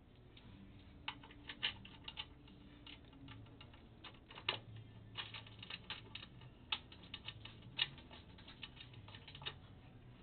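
Irregular light clicks and taps, metal on metal, as a bolt is fitted and tightened on the pin deflector guard of a GS-X pinsetter elevator.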